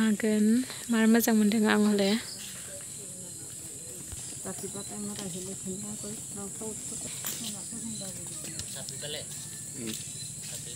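A steady, high-pitched drone of insects. For the first two seconds a loud voice is heard over it, and faint talking follows from about halfway in.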